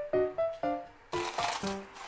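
Light background music of short plucked notes; from about a second in, plastic cling film crinkles loudly as it is peeled back off a glass bowl.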